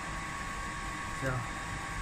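A steady background hum with a thin constant tone in it, like a fan or blower running, under one short spoken word about a second in.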